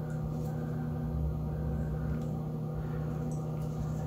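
A steady low hum runs throughout, with a few faint soft clicks from fingers pressing a silicone scar pad onto the skin of a foot.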